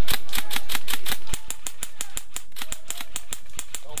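Airsoft gun firing a rapid string of sharp shots, about seven or eight a second, for nearly four seconds.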